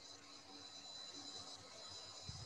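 Near silence: a faint steady hiss with a thin, steady high tone, the background of an online call's audio line.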